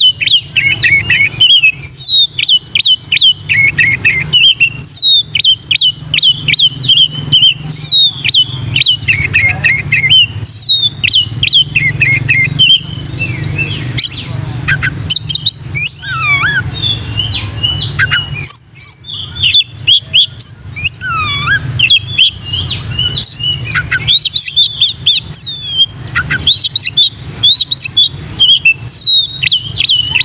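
Oriental magpie-robin singing loudly and almost without pause: a rapid stream of sharp, whistled notes and quick rising and falling phrases, with one brief break a little past halfway. A steady low hum runs underneath.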